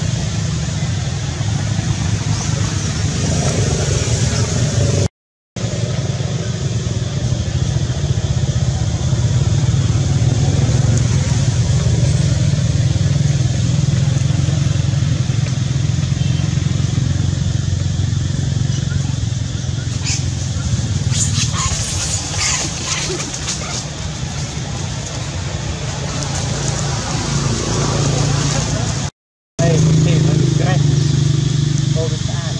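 A steady low droning rumble with a run of faint clicks about two-thirds of the way through; the sound cuts out briefly twice.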